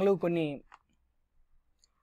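A man's voice speaking Telugu ends about half a second in, followed by a pause holding a couple of faint, tiny clicks.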